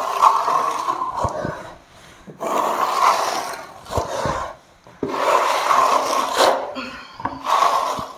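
Steel Swiss trowel scraping across freshly applied gypsum plaster (Unis Teplon) as the wall is levelled, in about five strokes a second or so long with short breaks between.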